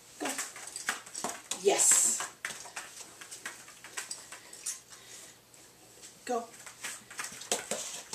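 A person's short spoken words, with "Go" near the end, over scattered light taps and clicks as a dog moves about and jumps up on foam floor mats.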